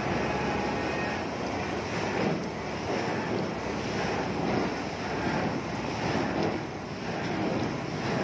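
Steady din of heavy diesel machinery running: a concrete mixer truck and a piling rig at work.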